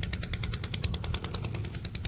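Small boat engine running steadily with a rapid, even chugging beat of about twelve strokes a second.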